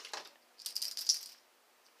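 A brief rattle of rapid, high clicks lasting under a second, about half a second in.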